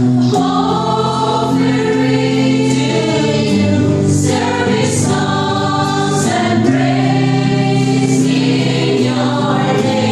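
A mostly female choir singing a worship song together, the line "offering service songs and praise in your name", in long held notes, with electric and acoustic guitar accompaniment.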